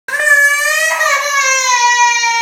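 A young girl crying: one long, unbroken, high-pitched wail that sags slightly in pitch as it goes. It is the crying of a toddler upset at being sent to bath and bed.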